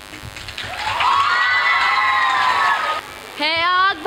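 A crowd of schoolchildren shouting together in one long, drawn-out slogan call that rises and then falls away. A girl's voice starts speaking near the end.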